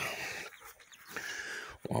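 Faint poultry sounds from muscovy ducks shut in a doghouse and young chicks around it.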